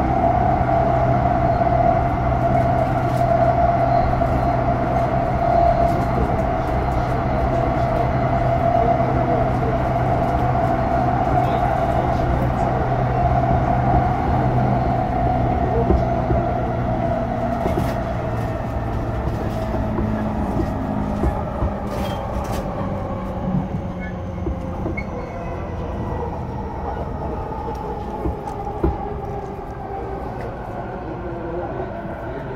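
JR East E233 series 0 electric train, heard from inside the car: the Mitsubishi IGBT inverter and traction motors hum over the rumble of the running gear. The sound grows gradually quieter, and in the second half the motor tones fall in pitch as the train slows, typical of braking on the approach to a station. A few sharp clicks come in the middle.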